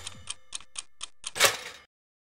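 Toaster sound effect: a mechanical timer ticking about four times a second, then a louder pop about one and a half seconds in as the toast springs up, after which the sound cuts off.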